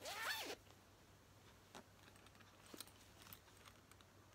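A short zip from a plush donut pencil case being handled, in one quick pitched sweep at the start, followed by a few faint clicks and rustles of handling.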